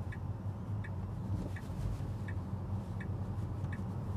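Tesla Model 3 turn-signal indicator ticking steadily, about one tick every 0.7 seconds, over a low road rumble in the cabin.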